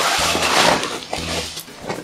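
Background music with a repeating low bass line, overlaid in the first second by a loud rustling rush of noise as the nylon fabric of an inflatable air lounger is pressed and rubbed while a person rises off it.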